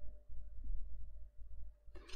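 Quiet room tone with a faint steady hum and a few soft, low bumps.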